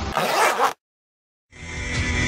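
Background music breaks off into a short, noisy sound effect about half a second long, followed by dead silence for under a second before new music fades in.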